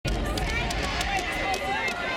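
Crowd of people talking at once, a steady babble of many overlapping voices.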